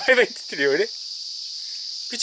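Steady high-pitched chorus of insects, with two short pitched calls in the first second.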